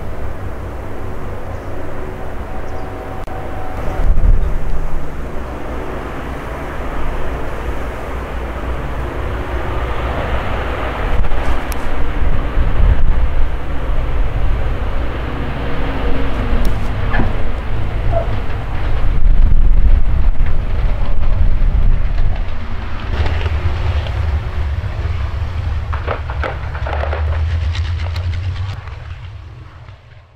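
Avro Lancaster's four Rolls-Royce Merlin V12 piston engines running at low power as the bomber comes in to land with its undercarriage down, then running on the runway after touchdown. The engine sound swells and falls away several times and fades out near the end.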